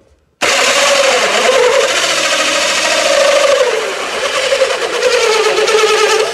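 Cordless drill running a hole saw through an oak plywood sheet. It starts suddenly about half a second in and runs loud and steady, its pitch dipping as the saw bites under load.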